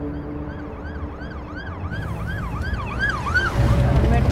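Emergency-vehicle siren in a fast rising-and-falling yelp, about three cycles a second, growing louder and then breaking off near the end, over a low rumble of traffic.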